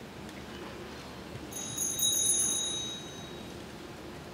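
A small bell rung once about a second and a half in, with a clear, high ring that fades over about two seconds. It is the start bell in vaulting competition, which signals the vaulter to begin.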